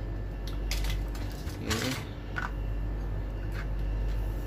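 A few light clicks and knocks as a USB cable and small objects are handled on a workbench, over a steady low hum.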